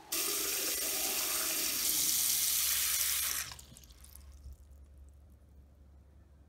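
A bathroom sink faucet runs into the basin, a steady rush of water that shuts off abruptly about three and a half seconds in. The water pools over a slow drain, which the owner puts down to a clog of hair and built-up gunk.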